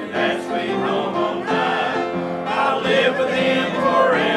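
A small mixed choir of men's and women's voices singing a hymn together, moving through held notes.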